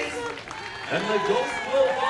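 A barbershop quartet's held a cappella chord cuts off at the very start, followed about a second later by cheering voices.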